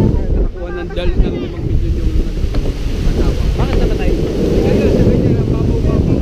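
Wind buffeting the microphone over small surf breaking and washing up the beach.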